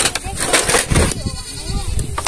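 Dry bamboo poles knocking and clattering in a pile as they are shifted by a gloved hand and a metal snake hook. There are several sharp knocks, the loudest about a second in.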